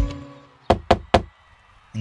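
Three quick knocks on a stage-set door as the music cuts off.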